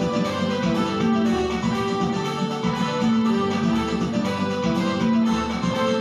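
Portable electronic keyboard played with both hands: a melody of changing held notes over lower accompanying notes.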